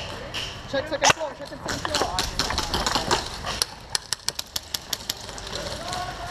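Airsoft guns firing: a run of sharp snaps, about five a second, over roughly two seconds in the second half, with a single snap about a second in.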